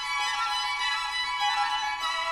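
Background music led by a violin, playing a melody of held notes that change pitch every so often.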